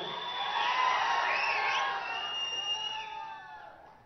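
Large audience cheering with high whistles, dying away in the last second.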